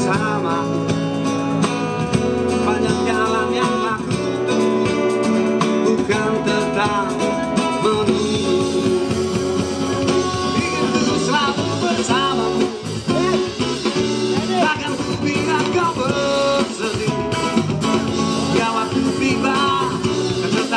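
Live acoustic band playing a song: strummed acoustic guitars with a man singing, backed by an electronic drum kit.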